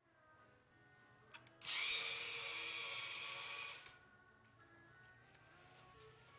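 Two Tetrix DC gear motors driving a robot's wheels at power 75 for about two seconds: a high-pitched whine that starts abruptly about a second and a half in and cuts off suddenly, with a short click just before it starts.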